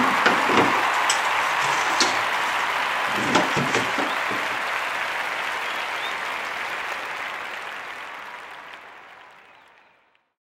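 Aluminum screen-printing frames knocking against the wooden slats of a plywood drying rack as they are slid into place, a few sharp knocks in the first four seconds. Under them runs a steady hiss that fades out over the last few seconds.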